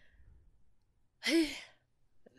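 A person sighs once, a short breathy exhale ending in a brief falling 'uh', about a second in.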